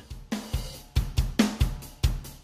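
Recorded drum kit playing a steady beat of kick drum, snare and hi-hat, several strokes a second. It is heard through multiband compression, with the low band compressed at 4:1 in vintage mode, which is only a subtle difference.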